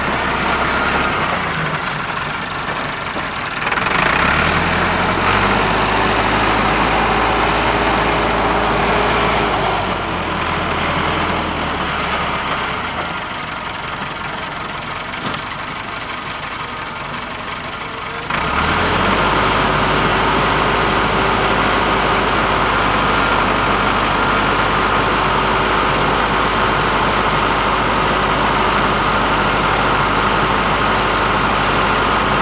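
Tractor diesel engine running as it works a plastic-mulch corn planter. It eases off to a lower, quieter speed past the middle, then picks up sharply about two thirds of the way through and holds a steady higher speed.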